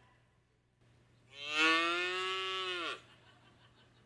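A recorded cow moo played back from Google's "cow sound" search result on a phone. It is one long moo, starting about a second in and lasting nearly two seconds, and it drops in pitch as it ends.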